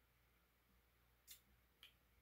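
Near silence, broken by two faint short clicks about half a second apart, from a plastic straw stirring a thick milkshake and tapping the cup's lid.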